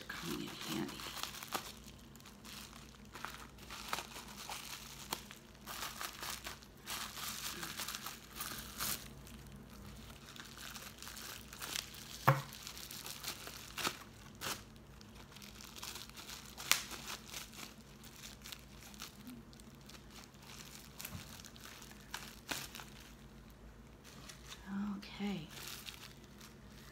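Plastic bubble wrap crinkling and rustling as it is cut with scissors and pulled off a wrapped object, with irregular crackles throughout. One sharp click about halfway through is the loudest sound.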